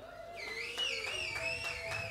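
A high, slightly wavering whistle-like tone, held for about two and a half seconds, with a fainter steady lower tone beneath it.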